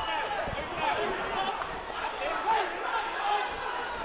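Boxing crowd at ringside shouting and talking over one another, several voices at once.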